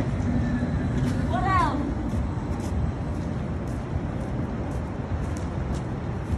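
City street background noise: a steady low traffic rumble, with a brief stretch of a voice about a second and a half in.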